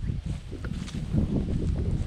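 Uneven low rumbling of wind and movement on a handheld phone's microphone while walking through garden grass.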